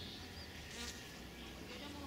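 Quiet garden ambience: a faint steady low hum, with a brief high chirp about half a second in.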